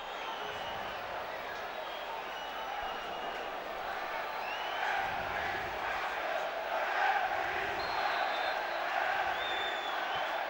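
Football stadium crowd: a steady hubbub of many voices from the stands while a free kick is about to be taken, swelling a little in the second half.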